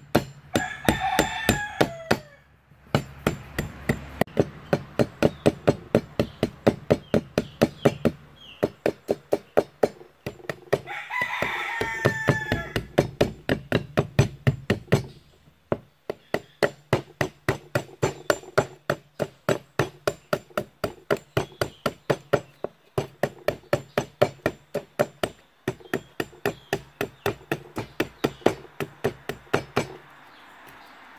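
Machete blade chopping into a small block of wood again and again, quick sharp strikes about three a second, as a wooden speargun stock is shaped. A rooster crows about a second in and again about eleven seconds in.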